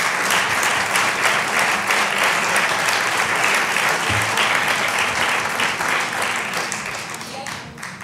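A large audience applauding in a hall, a dense steady clapping that tapers off in the last second or two.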